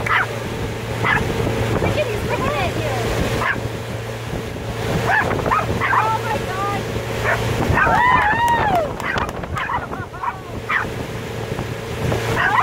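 Small dog barking and yipping repeatedly, over the steady hum of a motorboat's engine and the rush of its wake.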